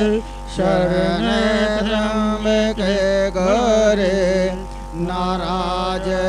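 A voice chanting Sanskrit puja mantras in a melodic, sing-song recitation, breaking off briefly near the start and again about five seconds in. A steady low hum runs underneath.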